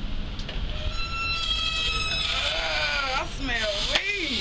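A high-pitched, drawn-out voice: one held note starting about a second in, then a wavering call whose pitch slides up and down and falls away near the end, over steady outdoor background noise.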